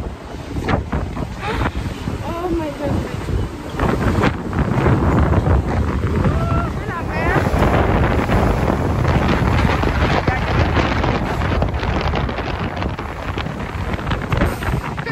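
Strong wind buffeting the phone's microphone on the open deck of a ferry at sea: a loud, continuous rushing and rumbling that sets in about four seconds in. Brief voices come before it.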